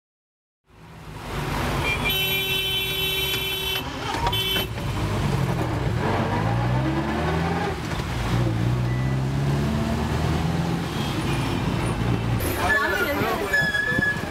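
Road traffic heard from inside a moving taxi. A vehicle horn sounds for about two seconds, then gives a short second honk, while an engine runs with its pitch rising and falling. Voices come in near the end.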